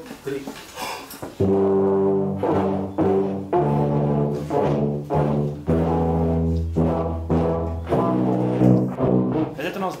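Tubas and other low brass horns playing together in a beginners' lesson: a slow exercise of sustained low notes, changing pitch every half-second to a second, starting about a second and a half in after a spoken count-in. The exercise drills the valve fingerings for new notes.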